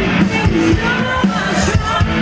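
Live band music played loud through a PA system, with a steady driving beat.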